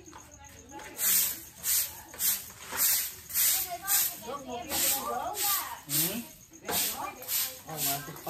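Broom swept in quick, even strokes across a concrete floor, each stroke a short swish, about two a second, starting about a second in. Voices talk faintly in the background.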